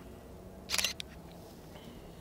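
Canon DSLR shutter firing once about three-quarters of a second in: a quick mechanical clack of mirror and shutter, with a single short click just after.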